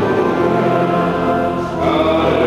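Sung liturgical music at Mass: voices singing slow, long-held notes, with a change to a new phrase near the end.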